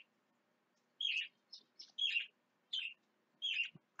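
A bird chirping: a handful of short, high chirps spaced through the pause, starting about a second in.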